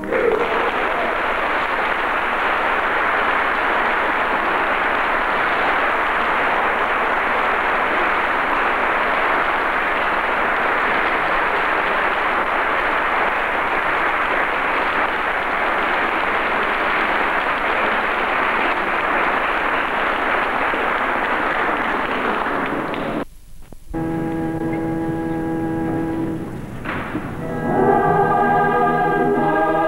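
Audience applauding steadily for about 23 seconds after a band piece. After a brief cut in the sound, sustained musical chords begin near the end.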